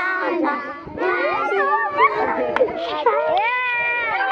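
Many young children's voices at once, chattering and calling out over one another, with some voices holding a sung note near the end.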